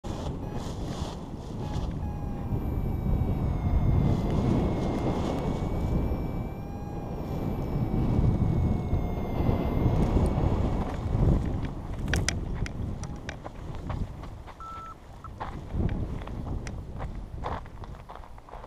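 Wind rushing over the microphone of a paraglider pilot's camera in low flight, with faint steady tones behind it. In the last third the rush eases and scattered sharp clicks and scuffs come in as the pilot skims the scrub and comes down to land.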